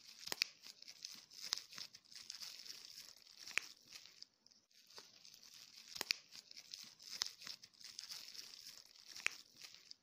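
Plastic bubble wrap crinkling under the fingers, with sharp pops as single bubbles burst, about six in ten seconds at irregular intervals.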